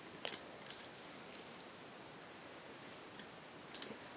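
Faint small clicks and snaps of rubber loom bands being stretched and slipped onto the clear plastic pegs of a Rainbow Loom: a pair of clicks near the start, a couple of lighter ticks in the middle, and another pair near the end, over a steady low hiss.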